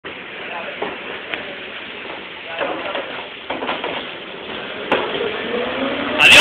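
Street noise around a rear-loading garbage truck: the truck running as a steady noisy background, with voices and three sharp knocks.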